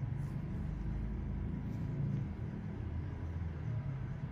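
A steady low rumble, with no distinct events.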